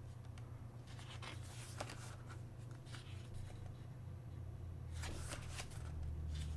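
Faint rustling of a photo book's paper pages being handled and turned, with a slightly louder swish near the end as a page is turned over.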